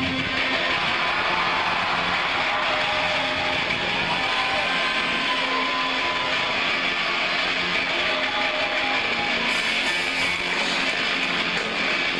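Electric guitars strumming, amplified through a concert PA in a large hall, as a live rock band starts a song.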